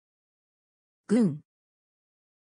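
Silence, then about a second in a single short word spoken by a voice: the Japanese word 軍 (gun), meaning 'army'.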